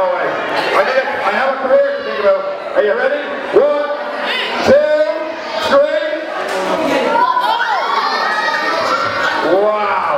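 A crowd of children shouting and cheering together in a large hall, with a few sharp knocks in the middle.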